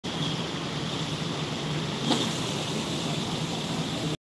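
Steady ambient noise with a low hum and a hiss, and one brief knock about two seconds in.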